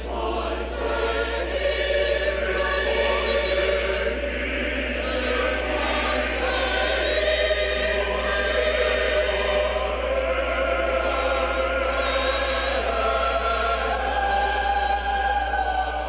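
Choir singing liturgical music in several parts, with long held notes and a steady level throughout.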